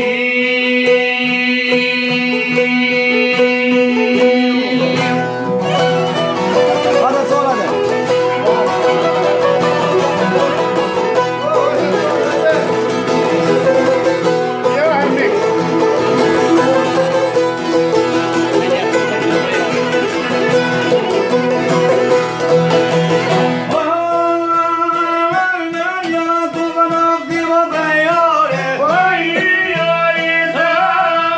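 Live Albanian folk music: a çifteli and other long-necked plucked lutes strummed with a guitar and a violin, with a man singing in an ornamented style. Held steady notes for the first five seconds, then fuller playing.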